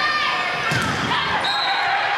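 Volleyball rally in an echoing gym: the ball is struck sharply once, about three-quarters of a second in, over a background of players' and spectators' voices, with short high squeaks near the end.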